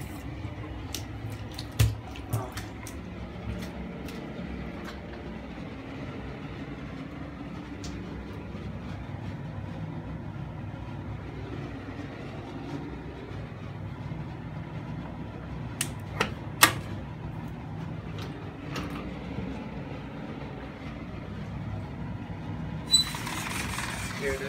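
Steady low background hum with a few sharp clicks and knocks, two of them close together a little past the middle. Near the end a louder rush of hissing noise sets in.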